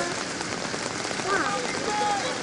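Steady hiss of rain falling, with distant shouts and calls from players and spectators mixed in.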